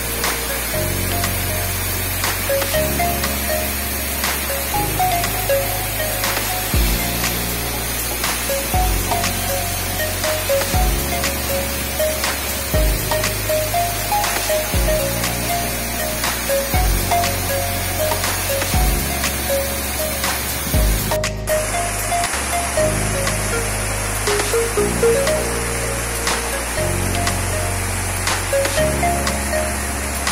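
Background music with a steady beat: low bass notes changing about every two seconds under a light melody. Beneath it runs an even hiss of falling water from a waterfall.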